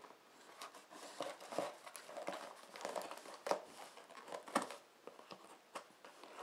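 Scissors cutting through packing tape and the cardboard of a shipping box: an irregular series of short snips, crunches and tape crinkles, with a few sharper cuts along the way.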